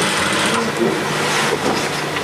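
Steady low machine hum of sewing machines running in a sewing workshop.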